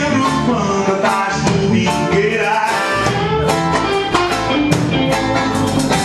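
A live rock band playing: electric guitars and a drum kit, with a man singing into a microphone.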